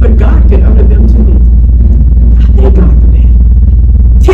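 A loud, steady low hum with evenly spaced overtones drowns the recording, while a woman's voice speaks faintly over it in short phrases.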